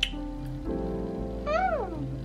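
A glass set down on a desk with a sharp click, over soft background music. About one and a half seconds in comes a short meow-like call that rises, then falls in pitch.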